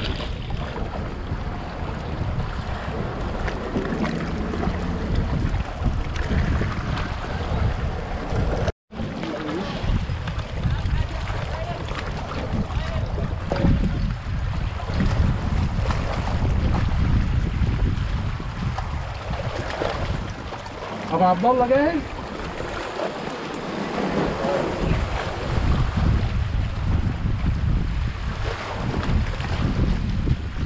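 Wind buffeting the camera microphone in a steady low rumble, over sea water washing among shoreline rocks. The sound cuts out completely for a moment just before nine seconds in.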